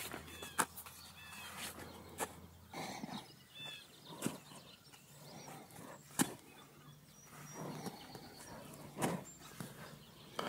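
A horse stepping and shifting her feet in arena sand, with scattered sharp knocks and clicks, the loudest about six seconds in. Small birds chirp faintly in the background.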